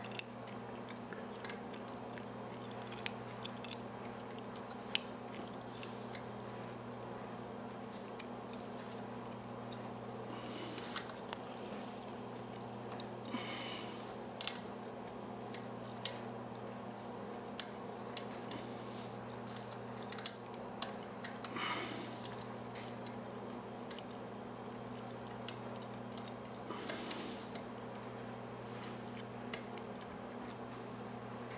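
Steel lock pick clicking and scraping against the pins inside a brass Brinks padlock full of spool pins, during single-pin picking under light tension. There are scattered sharp clicks every second or two and a few longer scratching passes, over a steady low hum.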